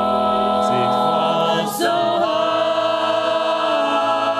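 Mixed-voice a cappella chorus of men and women singing held chords in close harmony, moving to a new chord about halfway through.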